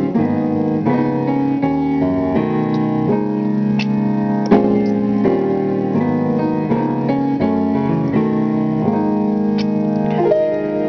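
Yamaha grand piano played with both hands: chords and notes struck in quick succession, several a second, ringing on under one another.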